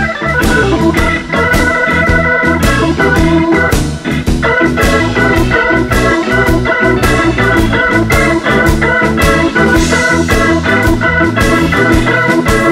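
Hammond organ playing an instrumental blues passage over a band with a steady drum beat, its held chords sustained throughout.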